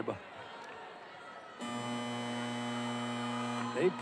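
Arena horn sounding one flat, steady buzzing tone for about two seconds, starting a second and a half in and cutting off suddenly, over low arena background noise; it signals a timeout.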